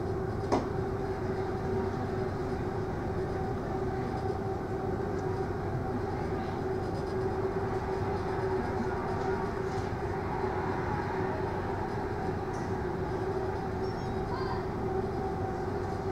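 Steady drone of a passenger ferry's engines and onboard machinery heard from inside the ship, with a constant mid-pitched hum running through it. A brief click about half a second in.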